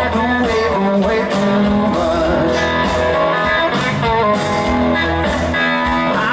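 Live blues band playing loud and unbroken, with electric guitar to the fore.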